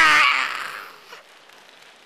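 A man's shouted voice breaks off just after the start. Its sound fades away over about a second, leaving low, steady room noise.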